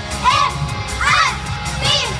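Girl idol group's live pop performance over a stage sound system: high-pitched voices shouting short calls in rhythm, roughly one every 0.8 s, over a backing track with a steady low beat.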